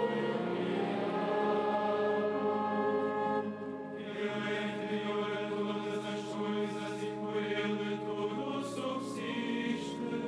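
Many voices chanting the sung liturgy of solemn Vespers, long held notes moving step by step from one pitch to the next, with a new phrase starting about four seconds in.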